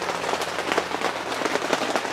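Steady rain pattering on the greenhouse, heard from inside: a dense patter of many small drop ticks.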